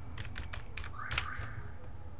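Computer keyboard keys tapped in a quick run of about five keystrokes as a short username is typed, with a brief soft hiss about a second in.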